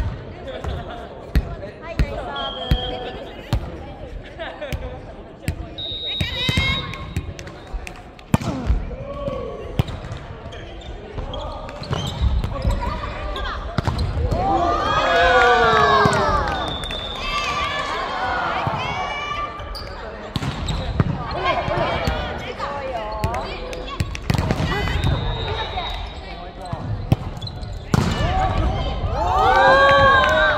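Volleyball rally: repeated sharp smacks of the ball off players' hands and arms, including a serve and a spike, with players' shouted calls, loudest around the middle.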